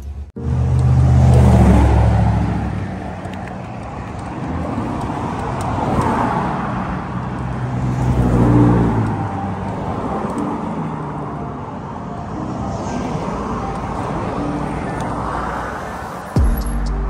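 Road traffic: several cars passing by one after another, each swelling and fading. The loudest passes come about two seconds in and again near the middle.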